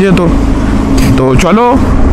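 Motorcycle on the move in traffic: a steady low engine drone with road and wind noise, broken by a short spoken word at the start and again near the end.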